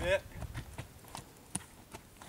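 A horse's hooves striking dirt footing as it trots around a round pen: a run of separate, dull hoofbeats about two or three a second.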